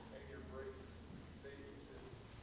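Faint, indistinct voices talking, too far off for words to be made out, over a low steady hum.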